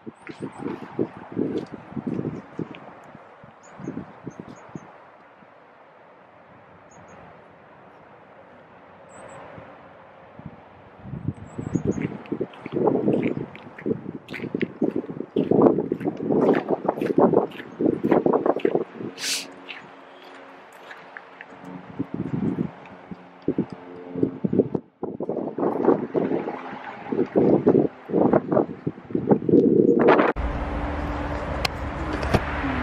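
Footsteps on a gravel path, an uneven run of short crunches that fades for a few seconds and then comes back denser.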